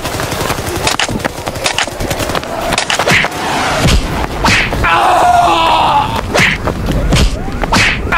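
Battle sound effects: a run of gunshots, some in quick bursts, with a drawn-out voice-like cry about five seconds in.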